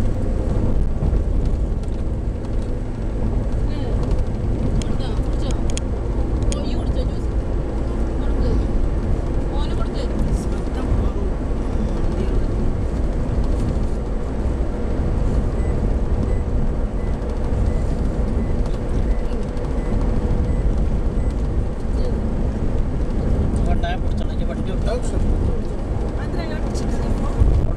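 Steady road and engine rumble heard inside a moving car's cabin at highway speed, with a faint steady hum and a few light clicks and rattles.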